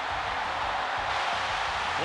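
Stadium crowd cheering steadily as the bases clear on a hit.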